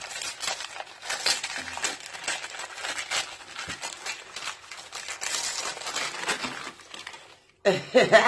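Christmas wrapping paper crinkling and rustling as it is pulled off a gift-wrapped bottle, in an irregular run of crackles that stops suddenly about half a second before the end, followed by a laugh.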